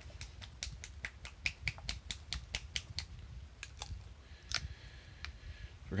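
A plastic Citadel paint pot of Stormshield technical paint being shaken: a fast run of sharp clicks, about six a second for three seconds, then a few scattered clicks.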